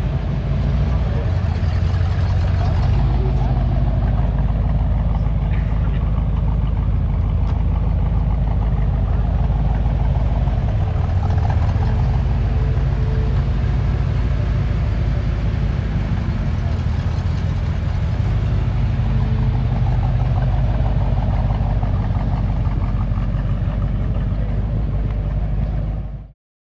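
1971 Corvette Stingray's 454 cubic-inch big-block V8 running at idle, a steady low rumble.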